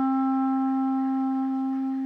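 Solo clarinet holding one long, steady note that slowly gets a little quieter.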